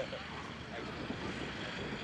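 Voices of players out on a football field over a steady outdoor rumble; a short laugh ends right at the start, then faint talk goes on.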